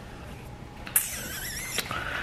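A cash envelope being handled: a short, high, squeaky rub lasting under a second, starting about a second in.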